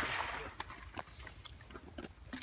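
Faint scattered clicks and rustling of people moving and handling gear. A hiss fades out over the first half second.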